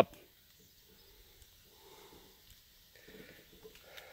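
Quiet, with two faint breaths from the person holding the camera, the second about a second after the first.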